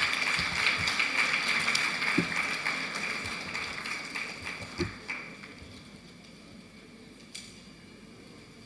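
Audience applauding, the clapping dying away about five seconds in, with two dull thumps during it.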